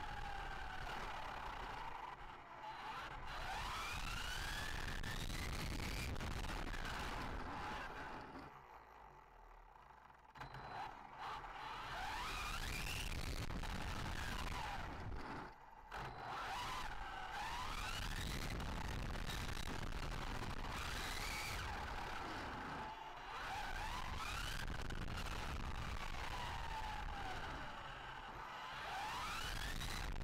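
Electric drive of a 1/7 Arrma Limitless RC speed-run car, motor mounted mid-chassis, heard from a camera on the car: a whine that rises and falls in pitch as it accelerates and slows, over a steady rush of tyre and wind noise. It goes nearly quiet for about two seconds around the middle and dips again briefly a few seconds later, when the car is off throttle.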